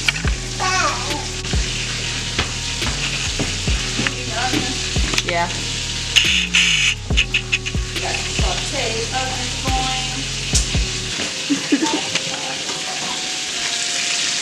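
Onions sizzling as they fry in butter in a frying pan, stirred with a utensil, with a few light scrapes and clicks. Background music with a slow bass beat plays under it and stops about eleven seconds in.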